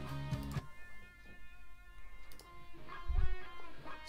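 Lead guitar solo playing back from a multitrack mix, with long sustained notes. A short low thump comes near the end.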